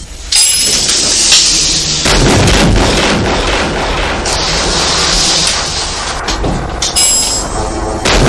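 Loud, dense, distorted rock music with heavy low end, which thickens about two seconds in.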